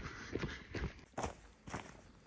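Footsteps crunching on a rocky dirt trail while hiking downhill: about four short steps, roughly half a second apart, fairly faint.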